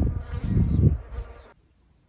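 An insect buzzing, with wind rumbling on the microphone; both cut off suddenly about one and a half seconds in.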